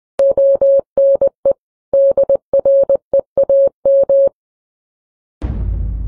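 A single steady electronic beep tone keyed in short and long pulses like Morse code for about four seconds. After a second of silence, a deep boom with a whoosh comes in near the end and dies away slowly.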